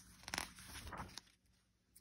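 A picture book's paper page being turned by hand: a brief, faint rustle and scrape in the first second or so.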